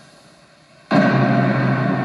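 A dramatic TV sound-effect hit: a sudden boom about a second in that carries on as a steady low drone, played to stress the revelation just spoken.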